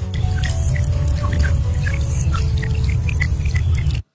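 Background music with a heavy bass and many short, scattered high plinks, cutting off suddenly at the end.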